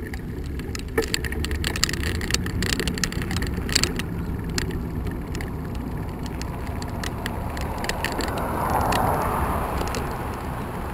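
Riding noise from a bicycle on cracked asphalt: steady low road rumble and wind on the microphone, with many small clicks and rattles from the bike over the bumps. Near the end the tyre noise of an oncoming car swells.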